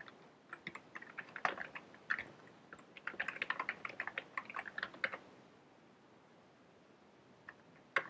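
Typing on a computer keyboard: a run of quick keystrokes for about five seconds, quickening in the last two, then a pause broken by one or two keystrokes near the end.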